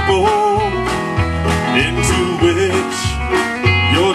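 Live country-gospel band music, an instrumental break between sung lines: a lead line with bending, wavering notes over a pulsing bass and drums.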